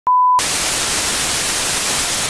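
A brief steady test-tone beep, as heard with TV colour bars, then a loud, steady hiss of TV static.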